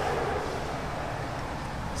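Road traffic: a steady rushing noise from a vehicle passing on the street.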